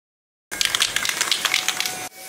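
Dense, irregular crackling like static, starting abruptly about half a second in and cutting off right at the end: a static or glitch sound effect for a logo intro.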